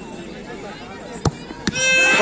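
A football struck hard in a penalty kick: one sharp thud a little over a second in, then a second knock about half a second later as the ball meets the diving goalkeeper in a save. A low crowd murmur sits underneath, and raised voices start near the end.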